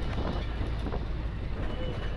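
Steady low engine and road rumble of a bus, heard from inside the moving cabin.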